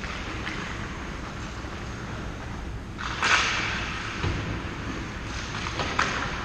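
A skate blade scraping across the ice in a sharp hiss about three seconds in, then fading. Underneath runs the steady low rumble of the ice arena, with a brief sharp click near the end, likely a stick or puck on the ice.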